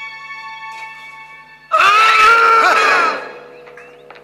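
Soft, steady film-score chord, then about two seconds in a sudden loud scream from an animated character, lasting about a second and a half before fading away.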